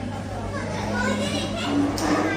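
Voices of a small indoor gathering, adults and a child talking over one another, over a steady low hum.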